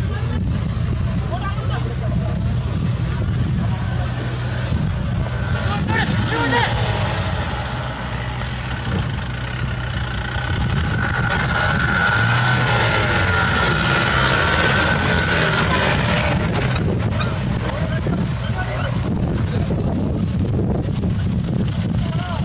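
Off-road 4x4 jeep engine running steadily under load, with crowd voices and shouts over it.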